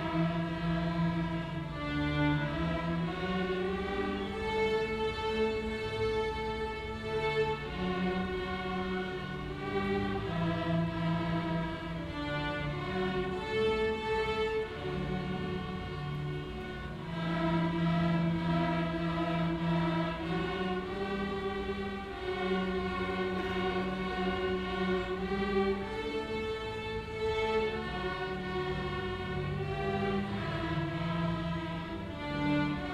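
Amateur string orchestra of violins, cellos and double basses, beginners joined by the full string ensemble, bowing a simple children's tune in melody and harmony, note by note in held, even strokes.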